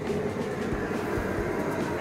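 Steady roar of a commercial kitchen's high-heat gas wok burner and extractor hood.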